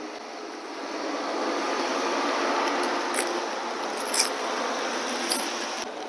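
A vehicle passing on the street: a rushing noise that swells over a couple of seconds and then slowly fades, with a few faint ticks on top.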